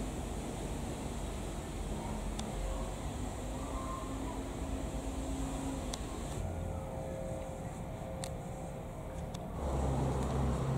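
Distant engine drone, low and steady with faint shifting tones, growing louder near the end.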